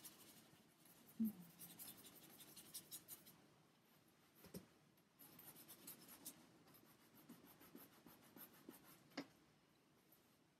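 Paintbrush bristles scratching acrylic paint onto a wooden birch panel in quick, short strokes, coming in two runs with a pause around the middle. A short low knock about a second in is the loudest sound, with smaller knocks at about four and a half and nine seconds.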